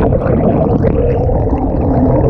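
Loud, steady underwater rumble with gurgling water, a sound effect under the outro logo.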